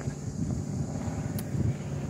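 Steady low rumble of wind on a handheld phone's microphone outdoors, with one sharp click about one and a half seconds in.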